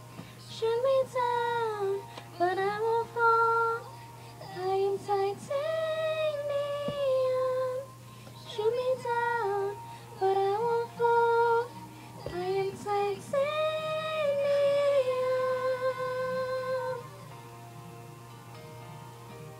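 Teenage girls singing a pop song's melody, in phrases of long held notes and pitch glides with short breaks between them; the singing stops about a second before the end.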